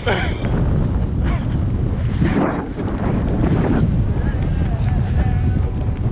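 Strong wind buffeting the microphone of a camera riding on a moving kite buggy, a steady heavy rumble with no let-up. A short laugh at the start.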